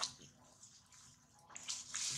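Faint scratchy rustling in dry grass and leaves, with a short click right at the start and the rustling getting louder near the end.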